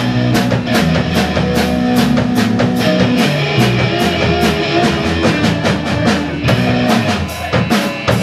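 Rock band playing live: a drum kit keeping a steady beat under electric guitars and bass.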